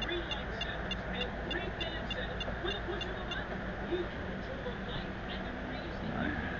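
Handheld EMF/RF meter giving short high ticks, several a second, that thin out in the second half, over a steady low hum.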